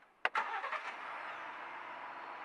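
Sharp clicks from the cabin controls, then the Lincoln Navigator's turbocharged V6 starts about half a second in and runs on with a steady rush.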